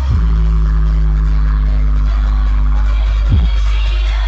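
Dance music played very loud through a DJ sound system, dominated by heavy bass. A quick falling bass sweep comes at the start and again about three seconds in.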